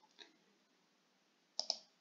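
Computer mouse clicks: a faint single click early, then a sharper pair of clicks near the end, with near silence between.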